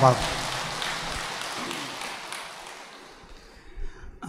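Audience applauding at the close of a dharma talk, the clapping dying away over about three and a half seconds.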